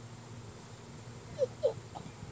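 Two quick, high yelps in a row about a second and a half in, over quiet outdoor background noise.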